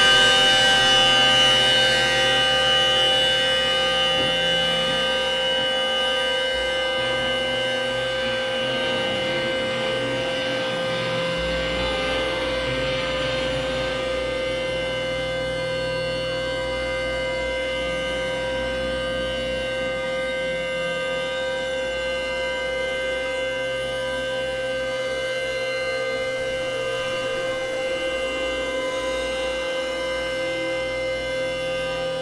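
Experimental synthesizer drone: several held, unchanging tones over a hissing noise wash, with low bass notes that shift every few seconds. It is loudest at the start and eases down a little over the first several seconds.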